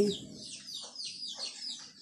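Birds chirping in the background: a quick, steady run of short, high, falling calls, with a couple of fainter, lower calls around the middle.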